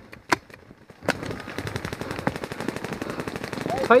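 Paintball markers firing: a single pop in the first half second, then about a second in a rapid string of shots, roughly a dozen a second, that runs for nearly three seconds.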